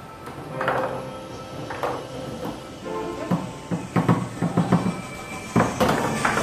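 Foosball table in play over background music: sharp clacks of the ball being struck by the rod-mounted players and hitting the table. There is a quick run of knocks about three to five seconds in and a loud hit near the end.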